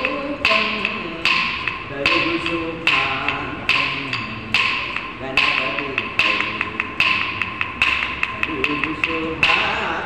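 Classical Indian music for a Kuchipudi dance: a sung melody over sharp, evenly paced percussion strokes about every 0.8 s, with lighter strokes in between.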